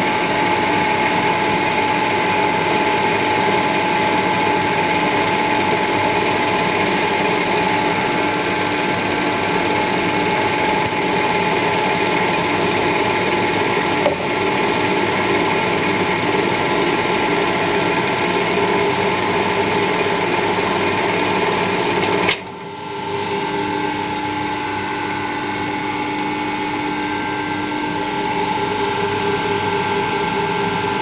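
Metal lathe running steadily at low spindle speed with a gear whine while a single-point tool cuts a .875 in UNF thread on a bar. A single click comes about halfway through. About three-quarters of the way in there is a sharp sudden noise, then the running sound dips briefly and goes on a little quieter at a slightly different pitch.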